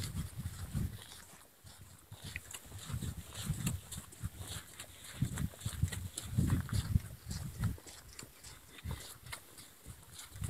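Footsteps on a dirt-and-gravel road, each step a low thud with a light crunch, coming in uneven groups as the walker goes along.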